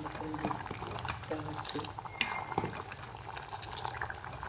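Chickpea curry bubbling at the boil in an aluminium pot, with many small pops and one sharper click about two seconds in.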